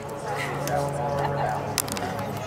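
Indistinct voices of several people talking and calling out at once at a baseball game, over a steady low hum, with one sharp click near the end.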